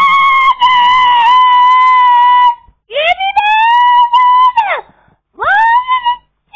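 A young child's high-pitched squealing: one long held note, then, after a short break, a note that swoops up about three seconds in and drops away, and another rising one near the end.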